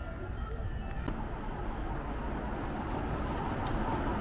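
Town street ambience: a steady low rumble and noise with faint, indistinct voices.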